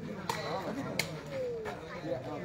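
Two sharp hits of a sepak takraw ball being kicked, about two-thirds of a second apart, over men's voices talking in the background.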